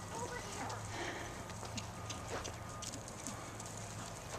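Faint hoofbeats of a horse trotting on sand arena footing.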